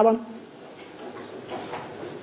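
A man's voice ends a word just after the start, then a quiet room with a few faint, indistinct sounds and faint voice traces.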